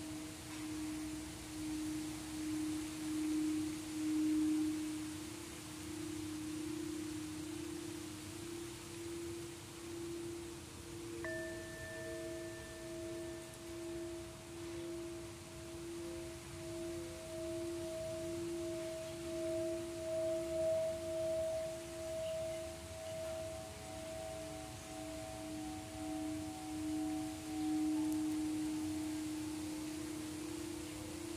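Singing bowls played with mallets: one bowl is rimmed into a steady low hum that swells and wavers in a slow pulse. About a third of the way in, a second, higher bowl is struck and then sung alongside it, and a third, slightly higher tone joins past the middle.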